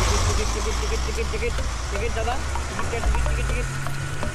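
Bus engine running with a steady low rumble under a brief call of 'ticket' and the chatter of passengers.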